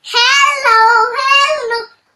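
Young girl singing a children's song in a high voice, one loud phrase of drawn-out notes that rise and fall in pitch.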